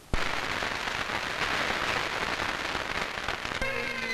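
A large banquet audience applauding, starting suddenly. Near the end, Highland bagpipes strike up with steady droning tones.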